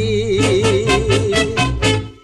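Thai luk thung song: a male singer holds one long note with a wide, even vibrato over bass and a quick, steady shaker-like beat.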